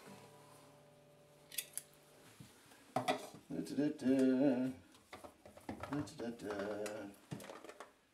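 An acoustic guitar chord rings out and fades over the first two seconds. Then come small clicks and clatter of harmonica cases being sorted through as a G harmonica is picked out, with a man's low wordless murmuring.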